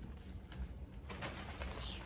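Bird calls in the garden, with a short high chirp near the end, and a plastic bag of soil rustling from about halfway in as it is handled.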